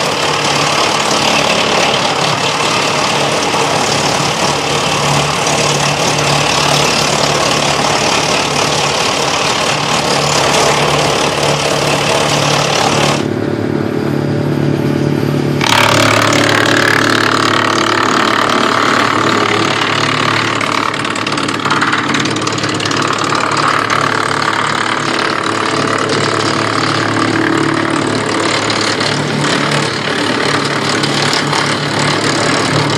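Tractor-driven Deleks DK-1800 disc wood chipper running off the PTO, a dense rushing noise of branches being chipped over the tractor engine's steady hum. About halfway through the chipping noise drops out for a couple of seconds, leaving mainly the engine, then comes back.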